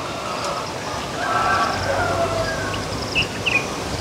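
Outdoor background with a few short bird chirps a little after the middle and faint voices in the distance.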